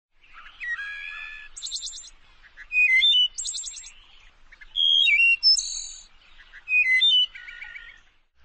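A bird singing four phrases, about two seconds apart. Each phrase mixes clear whistled notes that step and slide in pitch with a quick high trill.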